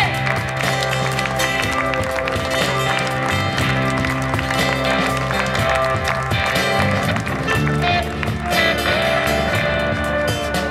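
Live band playing an instrumental passage: drums keeping a steady beat under a bass line and guitar.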